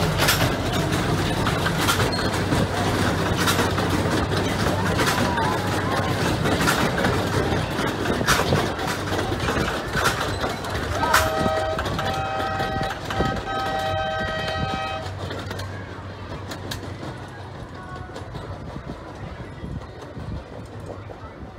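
Miniature park train passing, its wheels clicking over the rail joints in a steady run. About eleven seconds in, its horn sounds a series of short blasts. The running sound then fades as the train moves away.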